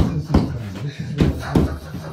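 A hand banging on a plywood-boarded stud wall, about four hard knocks in two pairs, showing the wall is solid.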